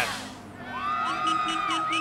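Brief laughter, in short pulsing bursts.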